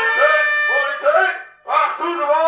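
Unaccompanied wind instrument playing short notes that swoop up and down in pitch, breaking off briefly about one and a half seconds in before the next phrase starts.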